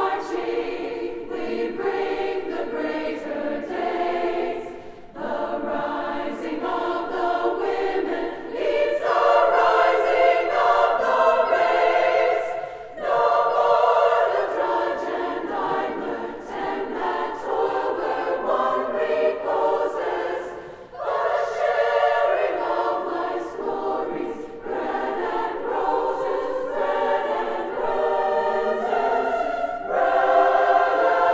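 Large women's choir singing in harmony, in long phrases with short breaks between them, swelling louder through one phrase near the middle.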